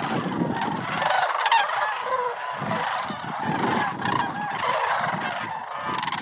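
A flock of sandhill cranes calling in flight, many overlapping calls at once in a continuous chorus.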